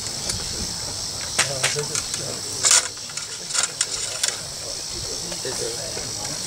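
Reenactors reloading muzzle-loading muskets after a volley: scattered sharp metallic clicks and rattles of ramrods and locks, the loudest about two and a half seconds in. Insects drone steadily and high-pitched throughout.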